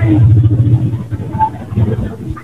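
A loud, rough low rumble heard over a video-call audio line that cuts off the high end.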